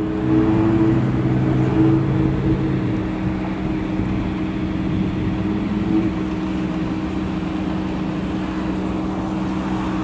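Steady hum of the motor coach's hydraulic lift gate running as the platform lowers all the way to the ground; one of its low tones drops out about three seconds in.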